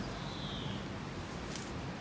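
Steady outdoor background hiss with no speech. A faint thin whistle, falling slightly, lasts about half a second early on, and a brief high rustle comes near the end.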